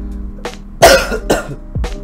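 A man coughs twice in quick succession about a second in, the first cough the loudest. Background music with a steady beat plays underneath.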